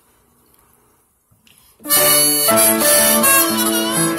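After a near-quiet start, piano and a harmonica in a neck rack start playing together a little under halfway in, with held harmonica notes over piano chords.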